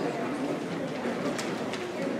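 Many voices chattering at once in a hall, with a few light knocks and footsteps on wooden stage risers as a group of children shuffles into place.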